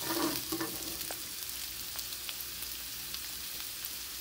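Sliced ginger and garlic sizzling in hot olive oil in a stainless pan, a steady hiss dotted with small pops. A wooden spatula stirs and scrapes the pan at the start.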